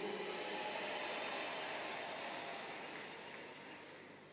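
Even crowd noise from an audience in a large hall, fading away steadily over a few seconds.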